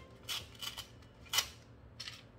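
Four short, crisp sounds of hands handling food containers at a dining table, the loudest about one and a half seconds in.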